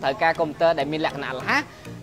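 A person talking, over a steady low background tone.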